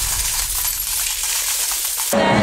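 Added sound effect of a stream of coins spilling and clinking, a dense, steady metallic clatter that cuts off suddenly at the end.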